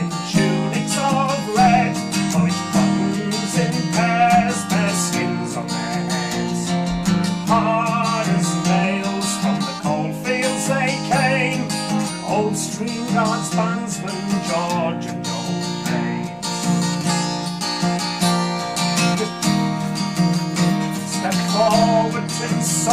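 A man singing a self-penned folk song to his own strummed acoustic guitar.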